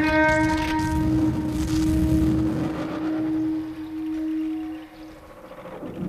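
Bass clarinet holding one long, steady low note over a low rumbling drone. The note fades out about five seconds in.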